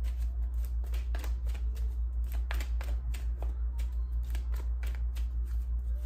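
A tarot deck being shuffled by hand: a quick, irregular run of soft card flicks and slaps. A steady low hum runs underneath.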